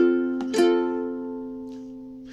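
A ukulele chord strummed twice, the second stroke about half a second in, then left to ring and slowly fade.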